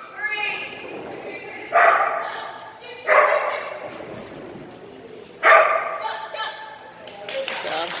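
A dog barking in three loud, sharp bursts, about two, three and five and a half seconds in.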